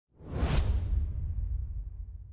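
Whoosh sound effect of a logo intro: a swish that peaks about half a second in over a deep low rumble, then fades away slowly.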